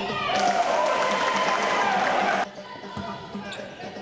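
Basketball game sound in a gym: loud shouting voices for the first two seconds or so, then an abrupt cut to quieter court sound with a few thumps of a dribbled basketball.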